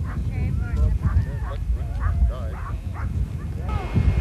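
Many short calls rising and falling in pitch, in quick succession, over a low rumble of wind on the microphone.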